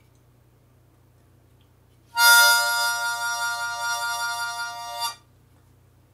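Harmonica sounding one held chord for about three seconds, starting about two seconds in with a strong attack, with a wavering vibrato, then stopping abruptly.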